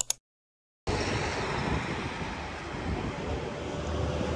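A moment of dead silence at the cut, then steady outdoor background noise, an even hiss over a low rumble, with nothing standing out.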